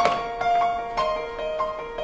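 Background film-score music: a synthesized keyboard melody of short notes stepping up and down over a steady held tone.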